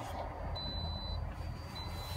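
A faint high-pitched electronic beep repeating about once a second, each beep about half a second long, over a low steady rumble.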